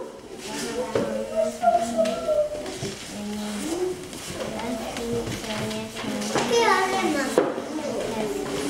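Young children speaking quietly, high-pitched child speech that gets louder and clearer near the end.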